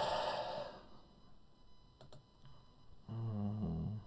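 A man's breathy exhale like a sigh at the start, a faint click about two seconds in, and a steady hummed "mmm" in the last second.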